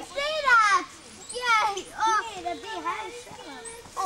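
Young girls squealing and shrieking in excitement: three loud, high, falling cries in the first two seconds or so, then quieter wavering voices.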